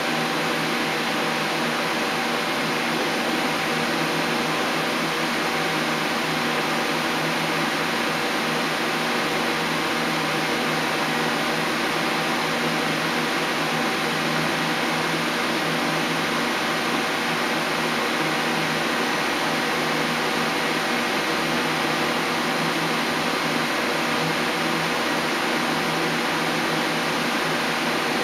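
Okuma Howa 2SP-V5 CNC vertical turning lathe running with its spindle turning an empty 15-inch three-jaw chuck: a steady machine hum and hiss with a few constant whining tones.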